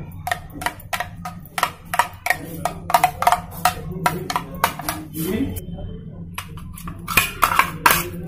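A steel spoon clinking and scraping against a white ceramic dish while stirring yogurt: a run of many quick, irregular taps.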